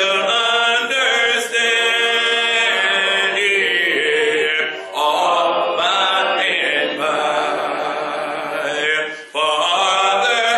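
Unaccompanied singing led by a man's voice at the pulpit, in long held, wavering notes, with brief breaks about a second in, near five seconds and near nine seconds.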